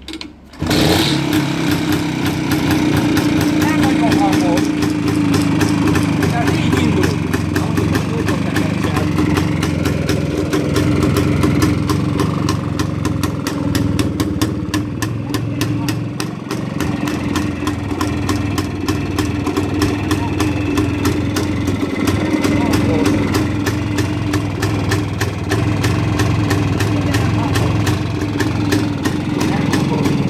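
A 1956 Pannonia TLT 250 motorcycle's single-cylinder two-stroke engine starts, catching about half a second in, then runs steadily at idle.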